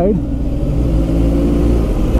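Motorcycle engine running steadily at low revs in slow traffic.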